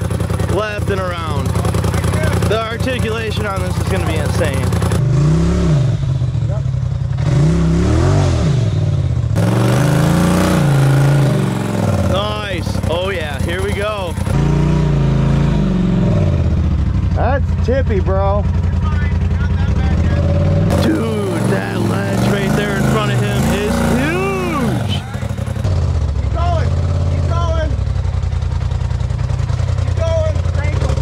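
Polaris RZR Turbo side-by-side engine revving up and falling back again and again as it crawls slowly up rock ledges, with voices in between.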